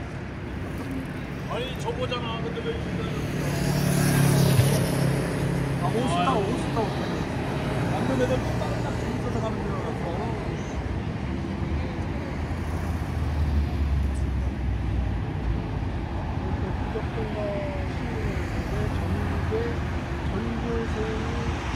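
City road traffic: cars passing on a wide street, the loudest going by about four seconds in, over a steady background of traffic noise, with snatches of voices.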